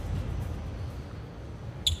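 Low, steady sports-hall ambience during a break between volleyball rallies, with a brief high referee's whistle near the end signalling the serve.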